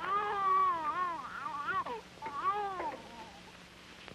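A baby crying in two wavering wails, the first about two seconds long, the second shorter.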